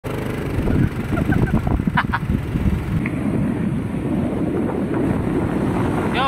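Motorcycle engine running steadily while riding, with wind buffeting the microphone.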